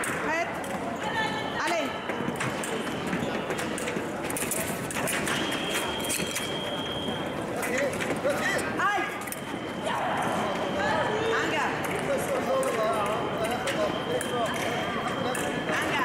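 Fencers' footwork on the piste: quick stamping steps and squeaking shoe soles, over a hum of voices in a large hall. A steady high electronic tone sounds twice, for about two seconds a few seconds in and again near the end.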